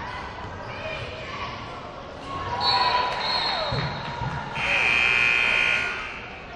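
Basketball game on a hardwood court: the ball bounces and sneakers squeak. A referee's whistle gives a short blast about two and a half seconds in, then a loud long blast of over a second near the end, stopping play.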